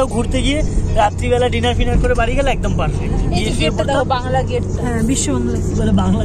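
Voices talking inside a car cabin over the steady low rumble of the moving car.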